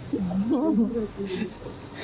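A woman's voice making a drawn-out, sing-song vocal sound whose pitch sweeps up and down for about a second, followed by a few quieter fragments.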